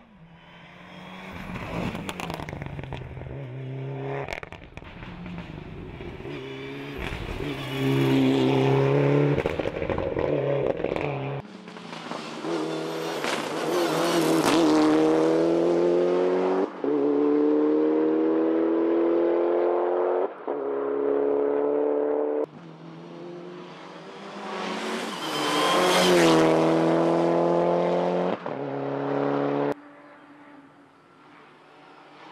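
Mitsubishi Lancer Evolution rally car's turbocharged four-cylinder engine at full throttle, rising in pitch through the gears with a brief cut at each upshift. It passes loudly by twice, about a third of the way in and again near the end.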